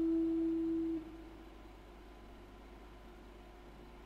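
Clean electric guitar through a small amp, one sustained note ringing steadily and then muted about a second in, leaving only faint amplifier hum and hiss.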